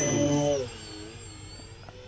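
Twin electric motors and propellers of an FT Guinea Pig foam RC plane running at high throttle for the take-off, a steady whine. About half a second in it drops away to a fainter whine with a wavering pitch as the plane leaves the ground.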